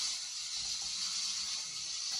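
Steady hiss from a video soundtrack playing through a television's speakers.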